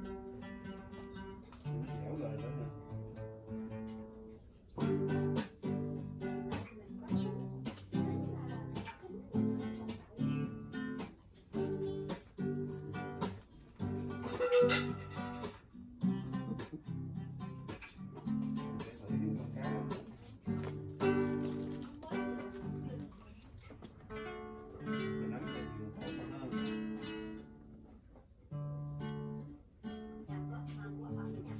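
Acoustic guitar being strummed, chords struck in a steady rhythm, with a short break about four and a half seconds in.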